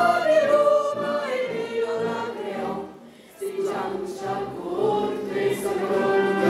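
A crowd singing together in unison, holding long notes, with a short pause between phrases about three seconds in.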